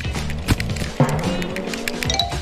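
Background music, with a short sharp hit about half a second in.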